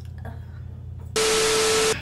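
Low room hum, then, a little past a second in, a loud burst of static hiss with a steady tone under it that switches on and cuts off abruptly after under a second: an edited-in static sound effect.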